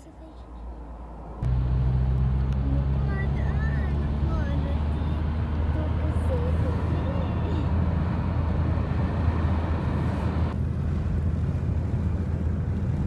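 Inside a moving car's cabin: a steady low drone of engine and road noise with tyre hiss, which comes in abruptly about a second and a half in. Faint voices can be heard under it.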